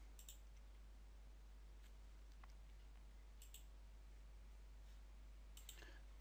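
Near silence with a few faint computer mouse clicks, a couple around the middle and a couple near the end.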